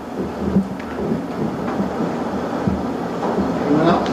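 Audience applauding: steady clapping of many hands.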